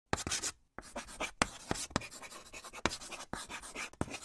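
Pen scratching across paper in quick strokes, with sharp ticks where the tip lands and lifts, pausing briefly about half a second in.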